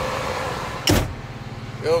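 Military truck's diesel engine idling, heard from inside the cab, with a short, sharp loud thump about a second in.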